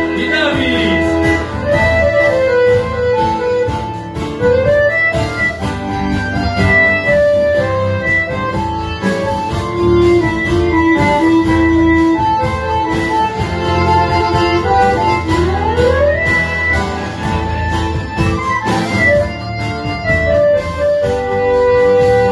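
Live band playing an instrumental passage: a lead melody that slides smoothly up and down between held notes over a steady low bass.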